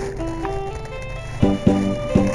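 Saxophone playing a slow melody of held notes over a backing track. The accompaniment thins out in the middle, and the beat comes back with drum hits about a second and a half in.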